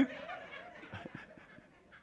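Faint breathy laughter and low voices right after a punchline, with a few soft taps about a second in.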